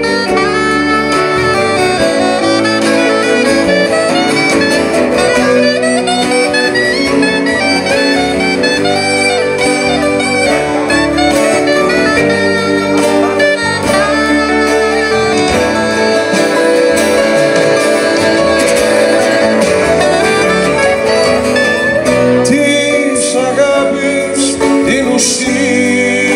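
Live band playing an instrumental passage of a song: acoustic guitar under a lead melody line with gliding notes.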